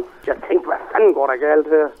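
Speech only: a man's voice on a recorded phone call, exclaiming "oh".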